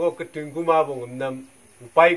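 A man's voice in one drawn-out, buzzing vocal sound of about a second and a half, held mostly on an even pitch while the vowel shifts.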